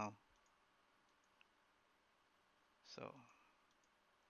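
Near silence with a few faint computer mouse clicks, one a little clearer about a second and a half in, as layer visibility is toggled on and off.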